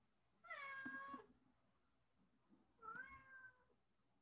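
A cat meowing twice, faintly: one meow about half a second in and a second, slightly longer one about three seconds in.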